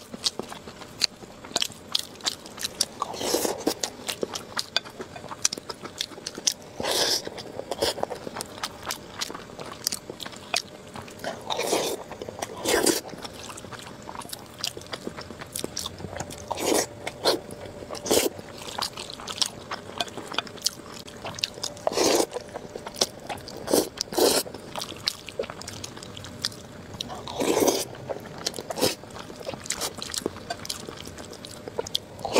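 Close-miked eating: chewing and biting through mouthfuls of a rice bowl topped with braised eggplant and chilli-fried egg. Frequent small clicks run throughout, with a louder bite or mouthful every few seconds.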